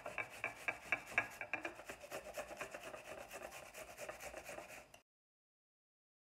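Half a red onion being grated fine on a flat metal hand grater: rapid, even strokes, about five a second, that stop suddenly about five seconds in.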